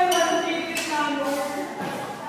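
A person's voice, with drawn-out sounds that slide down in pitch.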